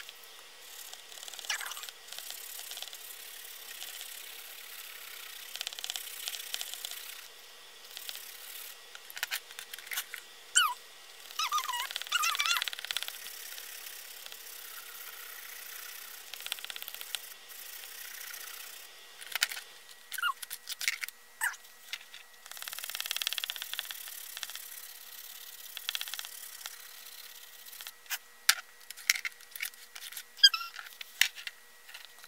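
Pencil crayons rubbing and scratching on paper in uneven shading strokes, with scattered light clicks and knocks of pencils against the page and table. Around eleven seconds in, a short warbling high-pitched sound comes through.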